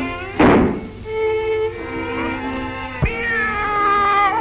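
Cartoon orchestral score with a loud thump about half a second in and a sharp knock near three seconds, followed by a long, drawn-out cartoon cat meow that starts just after the knock.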